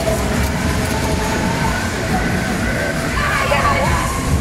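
Taiga Jet spinning fairground ride running, with a steady low rumble from its moving cars and drive, mixed with voices and loud fairground music.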